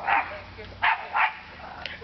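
Dog barking: three short barks, the last two close together.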